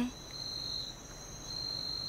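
Crickets chirring at night: a steady high trill, with a second, slightly lower trill that swells up twice.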